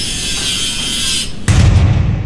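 Intro logo sting sound effects: a bright sizzling hiss of sparks that cuts off about a second and a quarter in, then a sudden deep boom hit that slowly dies away.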